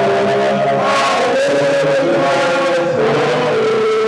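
Chanted church singing in long held notes, moving from note to note without speech breaks.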